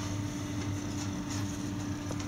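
A steady low electrical hum under a faint rustling noise, with a few soft clicks.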